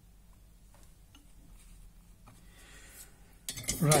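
Faint small metallic clicks and taps of component leads and a soldering iron being worked on a copper-clad circuit board. A man's voice comes in loudly near the end.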